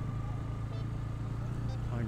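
Motorcycle engine running steadily at low road speed, a constant low drone.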